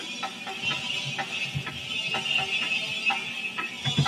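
Instrumental backing music with light percussion hits and a sustained high tone, without vocals.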